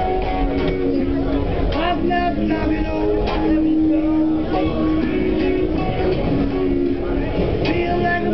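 Electric guitar played with long held notes that shift in pitch and sometimes slide, over a steady low rumble of a subway car running.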